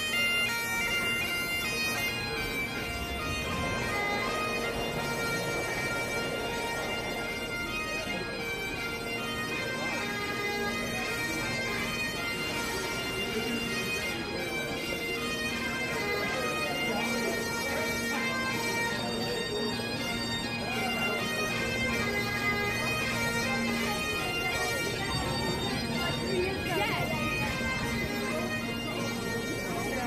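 Scottish bagpipe music: a melody played over steady, unbroken drones.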